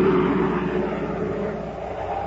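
Rocket-ship engine sound effect from a 1950s radio drama: a loud rushing noise that peaks at the start and slowly fades, serving as the bridge from the commercial back into the story.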